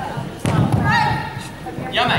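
A sharp thump about half a second in, followed by a high-pitched shout from a young girl, the kiai of a karate sparring exchange, ringing in a large hall; another shout starts near the end.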